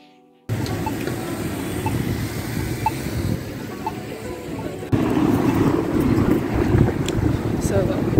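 Background music fades out, then a sudden cut about half a second in to outdoor street noise: wind buffeting the phone microphone over traffic. It gets louder about five seconds in.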